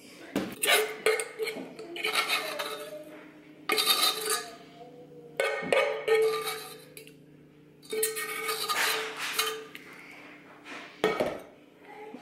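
A metal utensil scraping and clinking against a stainless steel saucepan as thick cranberry sauce is scraped out into a glass baking dish. It comes in about six separate bursts, each about a second long, with short pauses between.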